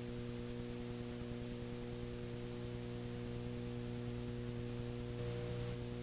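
Steady electrical mains hum, a stack of even tones, over a faint hiss.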